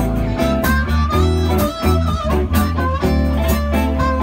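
Live blues band playing an instrumental passage: electric guitars, bass guitar and drum kit, with a lead line bending its notes in the middle.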